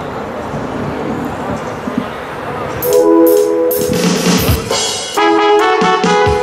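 Stage electronic keyboard starting a song's intro: after about three seconds of background noise, a held chord comes in, then fuller chords from about five seconds in.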